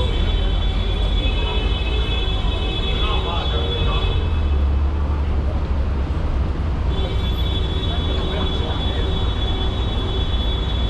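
Busy city street ambience: a hubbub of pedestrians' voices over a steady low rumble of traffic, which swells for a moment about five seconds in. A steady high-pitched electronic whine sounds at the start, drops out at about four seconds and returns at about seven.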